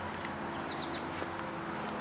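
Footsteps over a steady low hum, with a few faint high bird chirps a little under a second in.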